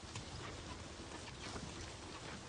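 Faint low puttering of a sleeping cartoon tractor's idling engine, with soft scattered knocks and rustles.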